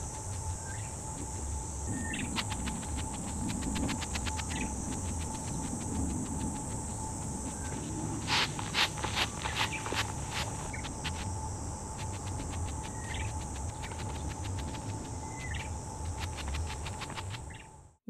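A broom's bristles brushing soil off clear plastic mulch film in quick scratchy strokes, clustered about two seconds in and again about eight to ten seconds in. Under it runs a steady high insect buzz and low wind noise on the microphone.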